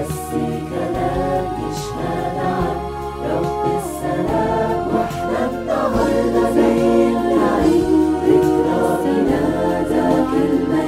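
Mixed choir of men and women singing an Arabic Christian hymn in harmony, over an instrumental backing whose low bass line changes note every second or so.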